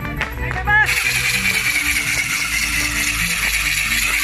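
Traditional dance-band music with violin, over which a loud, dense, high-pitched rattling noise sets in about a second in and holds for about three seconds, just after a short rising tone.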